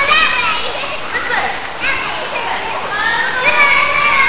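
Children's high-pitched voices shouting and calling out at play, with no clear words.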